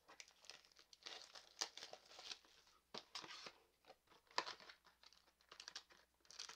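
Faint crinkling of plastic wrap and rustling of a small cardboard box being opened by hand, coming in short scattered spells with a few sharp clicks.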